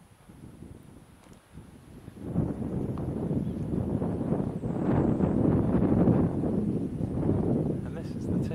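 Wind buffeting the microphone: a low, uneven noise that rises suddenly about two seconds in and stays loud.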